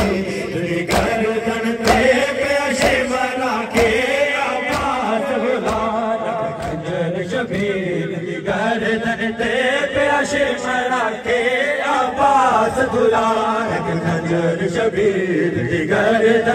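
A group of men chanting a Shia noha (mourning lament) in unison, with sharp matam strokes (rhythmic chest-beating) about once a second, mostly in the first half.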